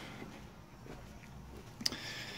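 Quiet room tone with faint handling noise from a handheld camera, and one short click near the end.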